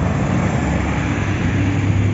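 Road traffic passing close: a bus engine's steady low drone with tyre and road noise.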